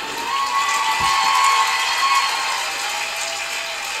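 Television studio audience applauding and laughing in reaction to a comedy punchline. A held musical tone runs over the applause for the first couple of seconds.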